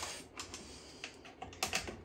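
Small irregular clicks and taps of rack screws and a driver bit against the metal rack rail as a mixer is screwed into its rack, with a few clicks close together in the second half.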